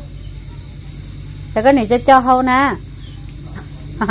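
Steady high-pitched insect chirring runs underneath. A little past halfway, a person's drawn-out, wavering vocal sound rises over it for about a second and is the loudest thing heard.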